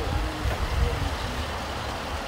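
Range Rover SUV moving slowly past at close range: a steady low engine and tyre rumble.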